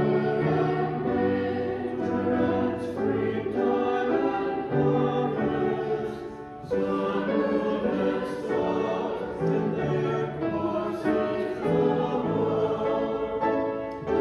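A congregation singing a hymn together, pausing briefly between lines about six and a half seconds in.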